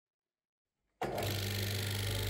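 22-44 oscillating drum sander switched on and running: a steady machine hum with a strong low tone that cuts in suddenly about a second in, after silence.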